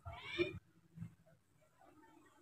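A single short, high-pitched cry at the very start, like an animal's call, followed about a second in by a faint knock.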